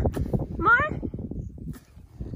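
A newborn Angus calf bleating once, a short call whose pitch rises, a little over half a second in.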